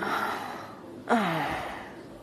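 A person's voice making gasp-like sounds that fall in pitch and trail off into breath: the tail of one at the start, and a second a little past a second in.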